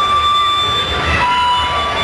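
Amplified harmonica played through a cupped handheld microphone, holding chords and long notes that shift in pitch about a second in, over the band's low end.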